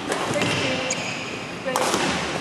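Badminton hall sounds: a few sharp knocks, the loudest near the end, over spectator chatter echoing in a large hall.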